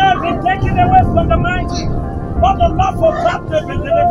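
Voices chanting and crying out in a quick run of short, high-pitched syllables that the speech recogniser could not turn into words, over a steady low rumble.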